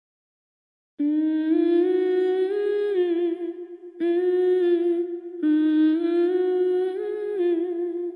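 A woman humming a slow melody unaccompanied, in three phrases of held notes that step up and down in pitch, starting about a second in.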